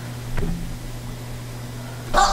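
A steady low hum with a faint hiss, broken by one short soft knock about half a second in.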